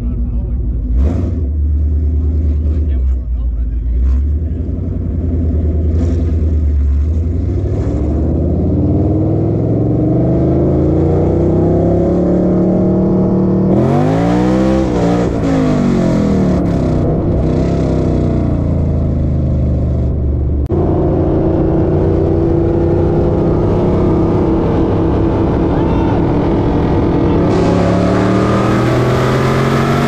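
Modified Ford Mustang engine and exhaust running low and steady at first, then, from about eight seconds in, accelerating hard with the revs climbing and dropping back at each gear change. A second car runs alongside, and wind noise grows at high speed near the end.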